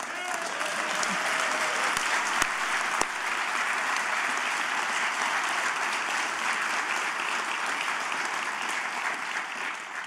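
An audience applauding steadily in a hall.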